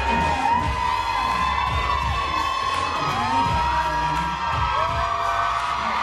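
Audience cheering, with long high-pitched screams and whoops over music with a low beat.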